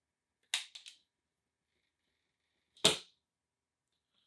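A T-square being handled and set down on a desk: a short light clatter of three quick ticks about half a second in, then one loud sharp knock near the three-second mark.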